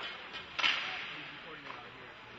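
A sharp crack from the ice hockey play, a stick or puck striking about half a second in, fading over a moment in the echoing rink.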